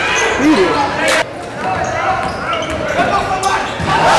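A basketball bouncing and knocking on a hardwood gym floor, with a sharp knock about a second in and more near the end, under spectators' shouts and chatter echoing in a large gym; crowd noise rises right at the end.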